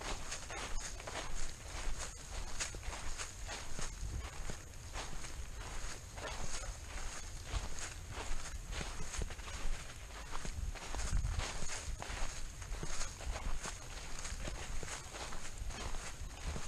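Footsteps of a person walking at a steady pace through a thick layer of fallen leaves on a forest floor, each step a crunch and rustle.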